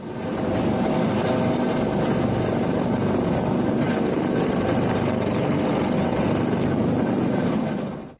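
Helicopter hovering close overhead: steady, loud rotor and turbine noise with rotor wash, heard from just beneath the aircraft during a winch hoist. It fades in just after the start and fades out near the end.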